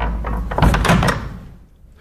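Wooden door of a church confessional box being opened and shut: a short clatter of knocks lasting about a second, then fading.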